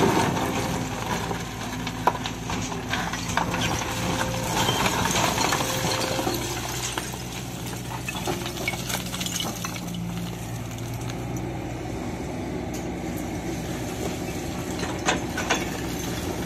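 Hydraulic excavator's diesel engine running steadily while its bucket scrapes through and scoops stone and brick rubble, with rocks clattering and tumbling, busiest in the first half. There is a sharp knock about two seconds in and another near the end.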